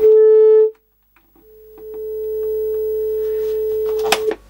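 Steady single-pitch test tone from a colour-bar pattern generator, played through the Philips KA 920 portable TV's speaker. It starts loud, cuts out suddenly under a second in, then fades back in and holds steady while the channel tuning is being adjusted.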